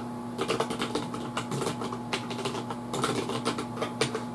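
Typing on a computer keyboard: a run of quick, irregular key clicks.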